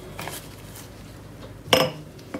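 Faint handling of containers on a table, then a single sharp clink of tableware near the end.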